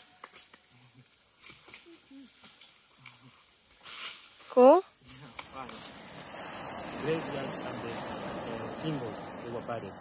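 A man's short, loud shout whose pitch swoops up, about four and a half seconds in, followed by low, indistinct voices talking.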